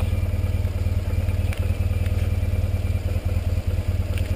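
Motorcycle engine idling steadily, a low even pulse with no change in speed.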